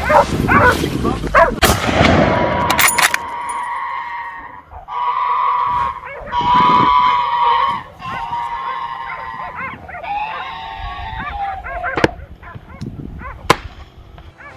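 Hunting dogs baying and yelping on the chase, with long drawn-out howls in the middle and short yelps after. Near the end come two sharp cracks, the second louder.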